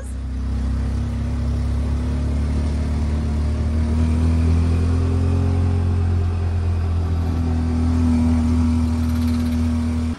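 Auto-rickshaw (tuk-tuk) engine running steadily as it drives along, heard from inside the open passenger cabin, loud and even with only slight changes in pitch.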